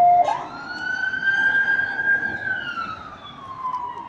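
Emergency vehicle siren wailing: the tone climbs sharply just after the start, holds high for about two seconds, then glides slowly down.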